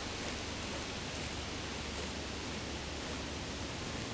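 Steady, even background hiss of outdoor ambience with a low rumble underneath; no distinct sounds stand out.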